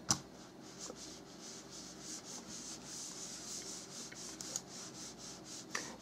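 A sharp click just at the start, then a faint, continuous scratchy rubbing sound.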